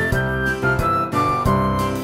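Instrumental Christmas background music: a flute-like melody of notes stepping down in pitch over a regular beat.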